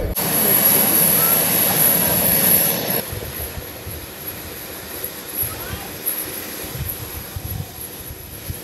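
Parked jet aircraft's turbine running: a steady high whine over a rushing noise, loud for about three seconds, then dropping suddenly to a quieter level with the whine still faintly there.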